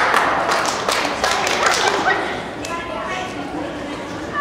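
A group of young girls shouting and talking over one another, with thumps and knocks in the first couple of seconds, the voices calming to chatter later.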